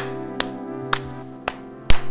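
Background music with sharp hand claps over it: a loud clap at the start, another near the end, and lighter taps in between.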